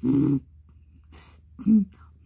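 Two short, low vocal sounds made by a human voice as a monster's part in a song: one at the start, and a shorter one with a falling pitch near the end.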